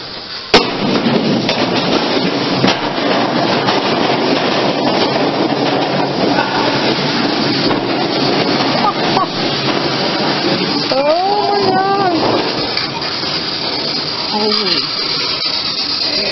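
An object dropped into an old school's enclosed metal fire-escape slide: a sharp bang about half a second in, then a continuous rumbling rattle as it travels down the chute.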